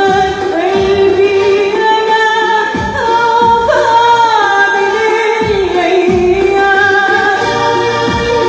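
A woman singing an Arabic song live into a microphone, holding long notes with bends and glides, accompanied by an electronic keyboard with a steady beat, all played through loudspeakers.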